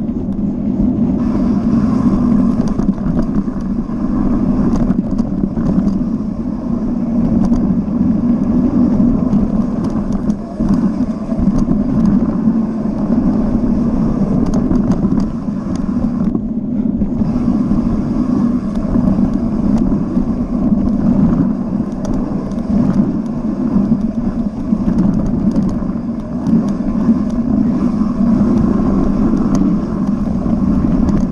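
Mountain bike descending a dirt trail at speed, heard from a camera mounted on the rider or bike: a steady loud rush of wind on the microphone and tyre rumble, with constant small clicks and rattles from the bike. The rattling briefly drops away about sixteen seconds in.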